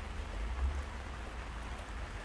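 Steady hiss of light rain falling, with a low rumble underneath.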